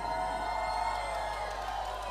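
Live band and symphony orchestra holding long, steady chords in a pause between sung lines.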